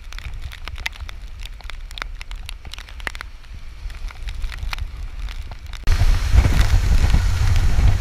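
Typhoon wind buffeting the microphone with a low rumble and a crackling patter of rain. About six seconds in, it jumps suddenly much louder.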